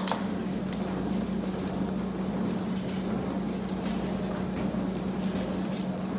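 A felt-tip marker writing on a plastic zip-top freezer bag, a faint scratchy rubbing, over a steady low hum and hiss.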